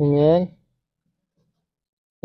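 A man's voice says one short word, then near silence follows.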